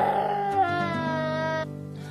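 Background song: a singer holds a long, wavering note over the accompaniment, the line breaking off about one and a half seconds in while the lower accompaniment fades out.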